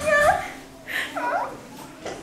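Young women's high-pitched, playful voices: a drawn-out sing-song "annyeong~" trailing off at the start, then a squeal and short gliding giggles about a second in.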